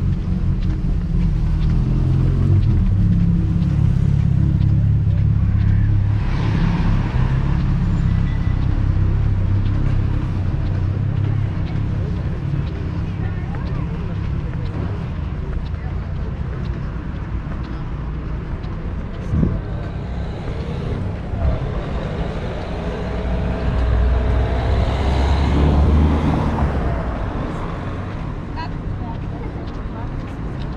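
City street traffic: a motor vehicle's engine running close by in the first several seconds, then another vehicle passing, loudest about 25 seconds in. People's voices are heard in the background.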